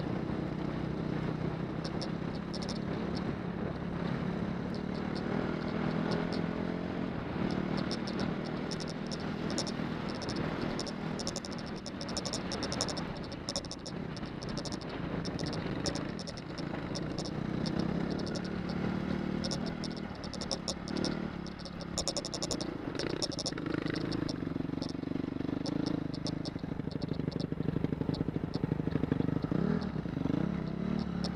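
Off-road motorcycle engine running at low speed on a dirt track, its pitch wavering up and down with the throttle, with frequent small clicks and clatter from the rough, stony ground. It gets louder near the end.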